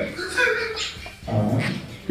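Men laughing quietly, in two short high-pitched spells.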